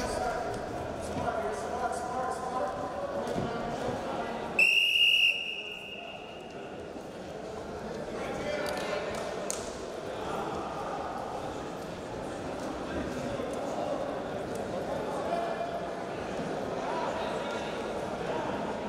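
A referee's whistle blown once, a single steady high-pitched blast of under a second, about five seconds in, stopping the wrestling, heard over the murmur of voices echoing in a large hall.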